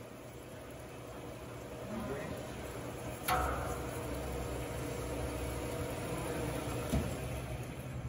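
FMB Titan GV metal-cutting band saw with a steady machine hum and low rumble. A sharp clunk comes about three seconds in, after which the rumble is louder, and a smaller knock comes near the end.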